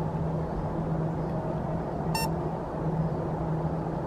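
A steady background hum and noise, with one short electronic beep about two seconds in.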